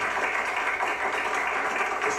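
Studio audience applauding: a steady, dense patter of many hands clapping.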